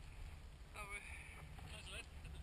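A faint voice speaks a word or two, about a second in and again near the end, over a low steady rumble of wind on the microphone.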